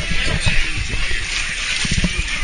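Log flume boat moving off: a steady rush of flowing water with irregular knocks and bumps, and music in the background.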